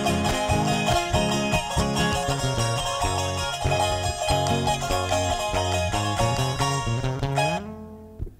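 Live Andean folk band playing an instrumental passage: bright plucked strings from a charango and acoustic guitar over bass and a steady beat. The music drops away near the end.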